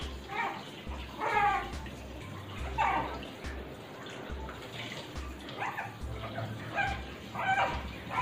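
Shih Tzu puppy giving short high whining cries, about one a second, while being bathed, over the hiss of a shower sprayer running water into the tub.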